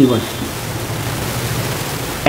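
Steady, even hiss of background noise with no distinct strokes or clicks, after a single spoken word at the very start.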